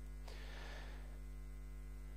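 Steady electrical mains hum with a stack of even overtones, picked up in the sound chain, with a faint soft hiss in the first second.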